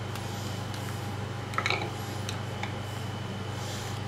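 Steady noise and low hum of a room air conditioner, with a few faint plastic clicks as a cover cap is pressed onto a stand mixer's drive outlet.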